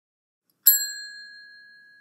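A single bell-like ding, struck once and left to ring, fading away over about two seconds.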